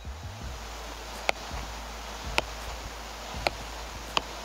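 A soccer ball being juggled on the foot, kicked from the knee down: three sharp touches about a second apart over a steady background hiss.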